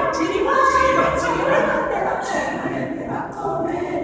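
Small mixed choir of men's and women's voices singing a cappella, held chords that move every second or so.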